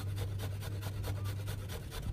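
Fresh coconut meat being grated on a metal box grater: quick, even scraping strokes, about five a second.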